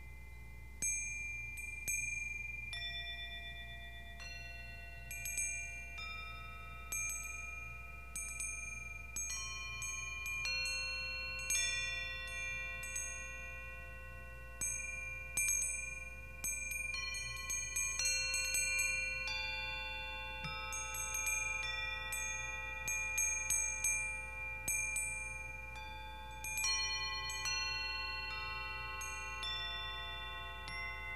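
Tuned metal chimes struck one note at a time with a mallet. Each clear note rings on for many seconds, so several pitches overlap. Strikes come about once a second, closer together in the second half.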